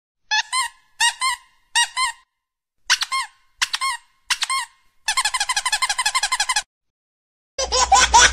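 A small white fluffy dog making short, high-pitched squeaks: single squeaks about every half second to second, then a fast run of squeaks about five seconds in, and a rougher burst near the end.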